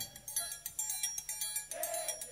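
Live capoeira roda music, fairly quiet: scattered strokes on berimbau and pandeiro, with a sung note held near the end.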